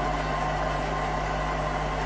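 Steady low hum of the room and its sound system picked up through the open microphone, with no speech.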